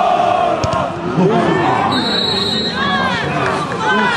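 Several men's voices shouting and calling over one another during football play: players and spectators reacting to goalmouth action.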